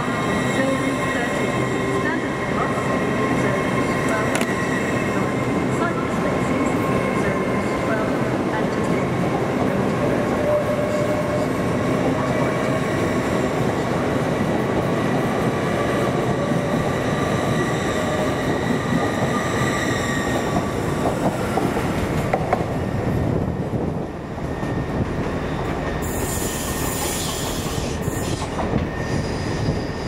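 LNER Class 800 Azuma train pulling away and passing close by, with a steady whine from its drive that rises slowly in pitch as it gathers speed, over the rumble of wheels on rail. About 24 s in the sound drops and changes as the scene switches.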